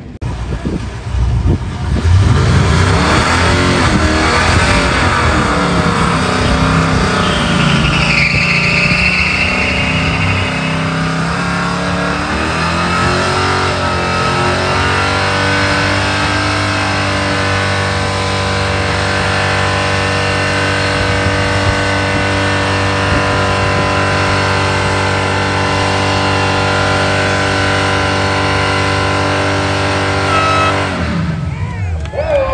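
Pickup truck engine revved hard in a burnout, its pitch wavering up and down over the first half with tyre squeal around the middle. The engine is then held at a steady high pitch, tyres spinning in place.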